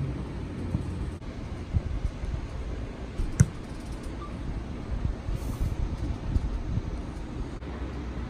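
A football kicked once: a single sharp thud about three and a half seconds in, over a steady low rumble.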